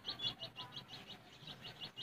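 Eurasian tree sparrow (maya) giving a steady run of short, high chirps, about six a second.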